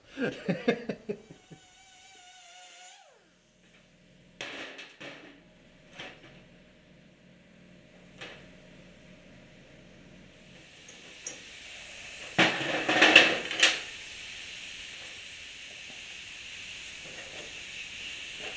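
Pneumatic die grinder cutting a slot into a rusty steel shear-head bolt: a brief whine falling in pitch about three seconds in, a few metal clicks, then a hissing grind that is loudest about twelve to fourteen seconds in and settles into a steady hiss.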